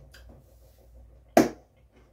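A single sharp hand clap about one and a half seconds in, with only faint small clicks around it.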